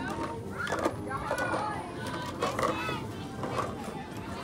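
Indistinct chatter of adults and children talking in the background.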